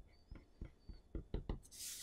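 Faint scratching of a marker on paper as short hatching strokes are drawn: about six quick strokes, then a longer, higher rasp near the end.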